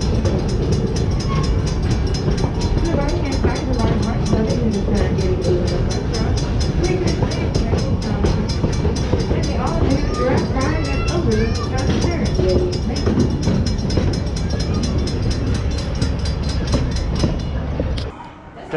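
Open-air passenger cars of a theme-park train rolling past a railroad crossing: a steady rumble with a fast, even ticking throughout. Passengers' voices rise out of it around ten to twelve seconds in.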